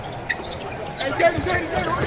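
A basketball dribbled on a hardwood court, with repeated bounces and short high sneaker squeaks during play, and voices behind.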